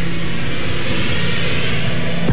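A whooshing, jet-like sound effect from an FM radio station's promo production: a swelling rush of noise with a slight falling sweep over a fading held synth chord, as received on a car radio.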